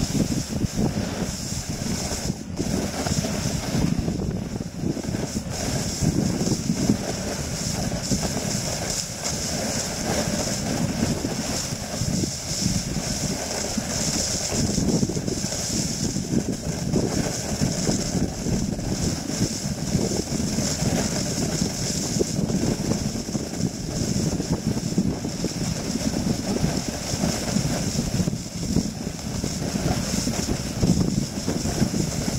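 Snowboard sliding over snow: a continuous rough scraping rush from the board on the snow, with wind buffeting the board-mounted microphone, rising and falling unevenly.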